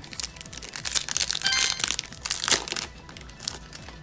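Foil booster-pack wrapper torn open and crinkled in the hands, a dense crackling that is loudest from about one to two and a half seconds in and dies down near the end.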